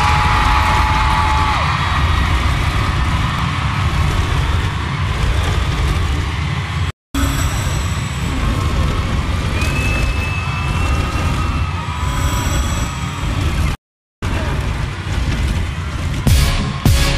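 Arena concert intro: a dense, loud roar of crowd noise over a deep rumble from the PA, with a few long held screams above it. The sound cuts out briefly twice.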